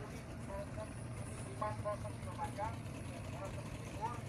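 Outdoor ambience with a steady low engine hum and faint, indistinct voices in the background.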